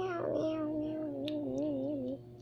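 A child's voice holding one long note that wavers and slowly falls in pitch, ending just after two seconds.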